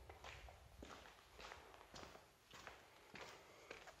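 Faint footsteps on a concrete floor, a soft step roughly every half second.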